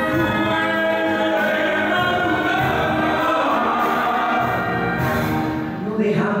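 A man singing into a microphone, with a small orchestra and piano accompanying him. He holds long notes.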